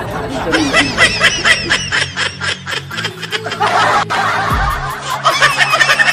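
Rapid, repeated snickering laughter over background music with a steady bass line.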